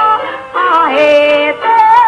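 Yue opera music from a 1954 recording: held, wavering melodic notes with a short break about half a second in.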